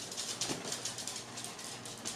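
Faint, irregular rustling and soft clicks of a boxed vinyl figure, cardboard box with clear window, being held and turned in the hands.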